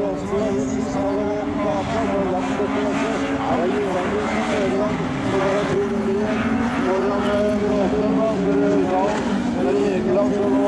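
Rallycross race car engines at full throttle on the track, their pitch climbing and then dropping back again and again as the cars shift through the gears.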